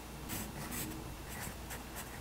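Pencil scratching on paper in several short strokes, drawing lines and a letter.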